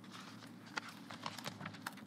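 Faint, irregular clicks of keys being tapped on a laptop keyboard, over a low, steady room hum.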